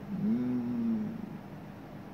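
A man's drawn-out hesitation sound, a held 'eh' of about a second that rises slightly and then holds, followed by a quiet pause.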